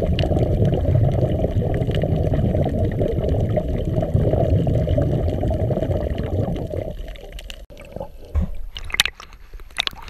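Muffled underwater rush of moving water heard through an action camera's waterproof housing, low and steady, fading about seven seconds in. A few short sharp splashes and clicks follow near the end.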